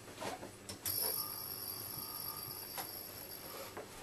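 A mercury vapour lamp and its power supply switched on: a click about a second in, then a steady high-pitched electrical whine of several tones as the lamp's arc strikes and it starts to run, fading out near the end, with a few faint clicks.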